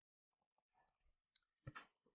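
Near silence with a few faint, short clicks in the second half, the light taps of a stylus on a tablet screen while writing numbers.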